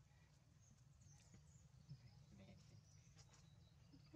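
Near silence: a faint low hum with a few faint, short high chirps and one soft tap just before two seconds in.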